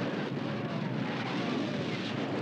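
Continuous rumbling din of an artillery barrage, dense and steady with no single shot standing out.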